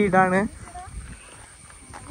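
A loud, drawn-out wavering call lasting about half a second at the very start, followed by quieter outdoor background.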